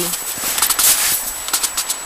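Irregular rustling and crackling from the camera being moved close against snow and clothing.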